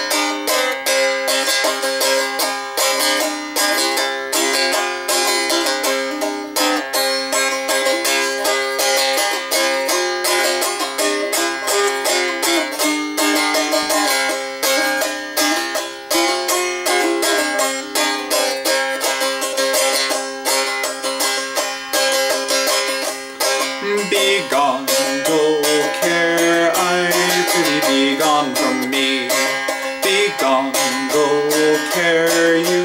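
A strumstick, the small fretted folk instrument that sounds somewhere between a dulcimer and a banjo, played in a repeating plucked melody over a steady drone note.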